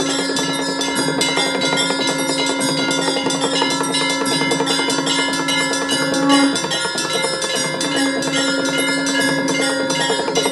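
Temple bells ringing rapidly and without pause, with a long steady low tone held for about six seconds, breaking off and starting again about eight seconds in.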